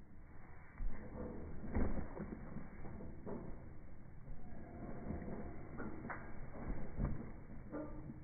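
Slowed-down slow-motion audio of a body landing and sliding on a trampoline mat: deep, drawn-out thumps, the loudest about two seconds in and again near seven seconds, with smeared low tones between them.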